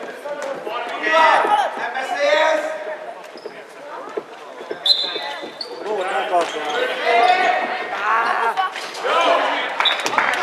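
A handball bouncing on a wooden sports-hall floor during play, with players' shouts echoing in the large hall.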